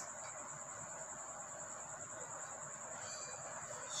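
Steady, high-pitched insect trilling that goes on without a break, over low room hiss.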